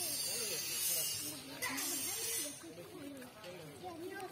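Water and mud splashing as hands grope through a shallow muddy pond, a hissing splash that is strongest in the first half and then fades, with faint voices underneath.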